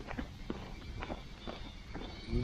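Footsteps on an asphalt road: several soft, uneven steps roughly every half second over a low outdoor rumble.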